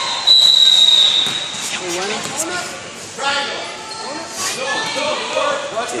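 A referee's whistle blown once near the start: one high-pitched blast of about a second that stops play. Players' voices call out across the gym afterwards.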